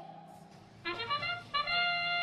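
FIRST Robotics Competition field's match-start sound signalling the start of the match: two held horn-like notes back to back, starting about a second in.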